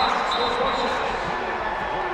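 Arena crowd cheering in a basketball gym, loudest at the start and easing off slightly, after a drive to the basket.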